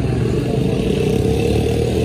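An engine running steadily: a continuous low rumble with a constant mid hum.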